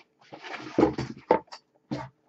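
Newspaper packing being rustled and crumpled while it is pulled out of a shipping box. A run of crackles lasts about a second and a half, with the sharpest ones near the middle, then it stops.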